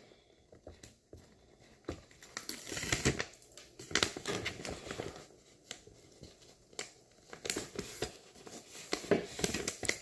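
Paper-and-plastic sterilization peel pouch crinkling and rustling in the hands in irregular bursts as its release paper is peeled off the adhesive strip and the flap is folded down to seal it.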